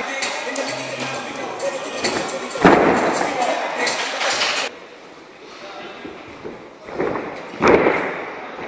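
Heavy thumps of bodies landing on gymnastics mats: one loud thud about two and a half seconds in and two more near the end, amid gym chatter.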